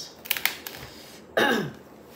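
A few quick light clicks, then a woman briefly clears her throat with a short falling vocal sound.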